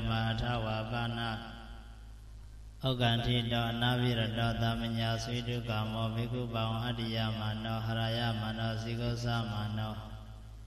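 A Buddhist monk's voice chanting a Pali scripture passage in a steady, sing-song recitation into a handheld microphone. The chant stops about a second and a half in and resumes about three seconds in, running on without a break.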